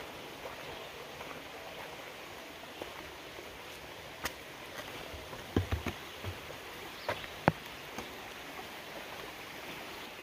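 Small creek running steadily under a wooden footbridge, with a few footsteps knocking on the bridge's planks about halfway through.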